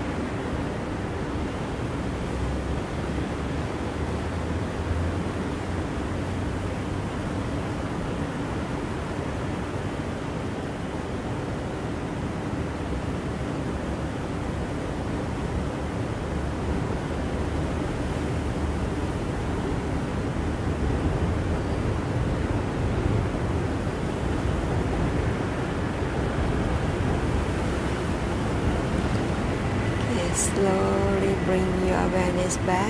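Steady outdoor background noise: an even rushing hiss over a low rumble, getting slightly louder in the second half.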